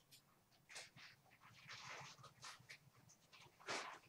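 A dog chewing and tugging at a stuffed plush toy in its bed: irregular short bursts of chewing, snuffling and fabric rustling, the loudest about three-quarters of the way through.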